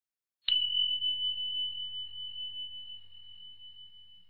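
A single bell-like ding: one clear high tone struck about half a second in, ringing on and slowly fading over the next few seconds.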